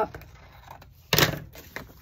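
Scissors cutting through a paper sticker sheet: a few faint snips, then one louder cut or paper rustle about a second in.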